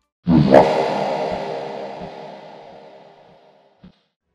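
An edited transition sting: a sudden hit with a held, many-toned chord that starts just after a short silence and fades out slowly over about three seconds.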